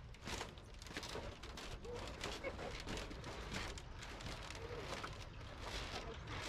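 Faint outdoor ambience: a low steady rumble with scattered light clicks and faint distant voices.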